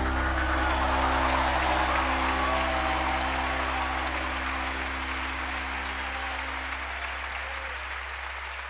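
Large concert crowd applauding and cheering over the band's final held chord, which rings on steadily beneath the clapping. Everything slowly gets quieter.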